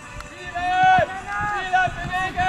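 Young footballers shouting on the pitch: a string of loud, drawn-out calls, each about half a second long, starting about half a second in.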